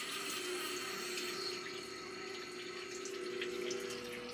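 Rottler CNC cylinder hone running with its spindle turning: a steady, even whir with a faint hum.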